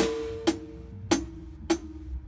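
Drum kit played along to a song. A cymbal crash at the start rings for about a second, then single hits follow evenly, about every 0.6 s.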